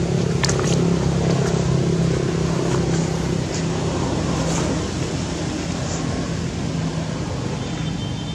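A steady low engine hum under a rushing background noise, easing off a little in the second half, with a few faint ticks.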